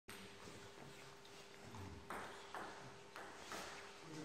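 Table tennis ball striking table and bats, four sharp clicks about half a second apart in the second half, faint over a steady low hum.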